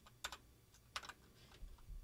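A few faint, scattered computer keyboard keystrokes, irregularly spaced, as a line of code is edited.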